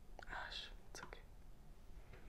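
A soft whispered word from a woman, followed about a second in by two or three short, light clicks.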